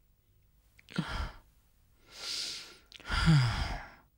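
A man breathing out heavily in three breathy sighs, the last one voiced and falling in pitch.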